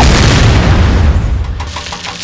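Boom sound effect: a sudden deep blast that cuts in at once and dies away over about a second and a half.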